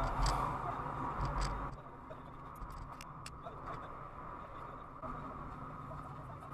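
Low, steady rumble of a car driving, which drops to a quieter hum about two seconds in, with a few faint clicks.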